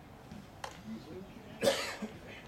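A person coughing once, short and loud, near the end. A faint sharp click comes earlier.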